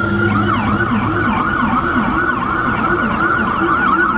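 Ambulance siren, loud and steady, switching just after the start from a held tone to the fast up-and-down yelp, about three sweeps a second.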